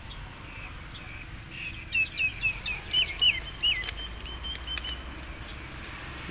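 A songbird calling: a run of short, sharp chirps, each dipping in pitch, about three a second, starting about a second and a half in and tailing off near the end.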